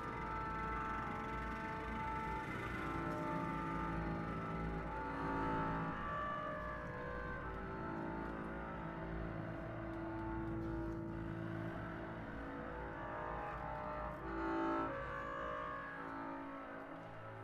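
Contemporary chamber music played live: bowed double bass, clarinet, viola and other instruments hold overlapping sustained notes that shift in pitch every second or so.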